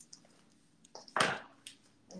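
A few faint footsteps as a person walks away, with one short spoken word about a second in.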